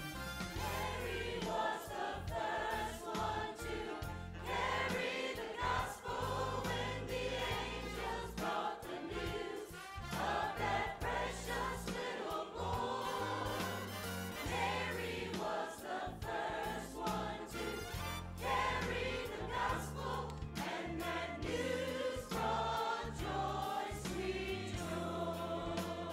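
Mixed church choir singing a Christmas anthem over an instrumental accompaniment with sustained bass notes.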